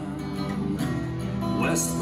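Steel-string acoustic guitar being strummed and picked in a country-style tune.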